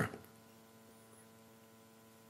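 Near silence with a faint, steady electrical hum made of several fixed tones.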